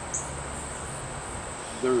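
Steady high-pitched chorus of late-summer crickets, with a low hum during the first second or so and a brief high chirp just after the start.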